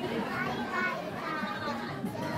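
Young girls' voices, talking in high voices.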